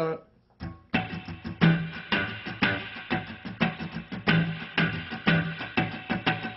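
Semi-hollow electric guitar playing a funk rhythm: fast sixteenth-note strumming with muted, scratchy strokes and louder staccato chord stabs, the chord hand squeezing and relaxing on the strings. It comes in about a second in, after a short sung 'uh' count-in.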